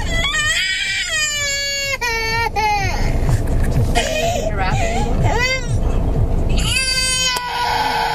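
A toddler crying in several long, high-pitched wails, inside a car cabin with a low engine and road rumble underneath.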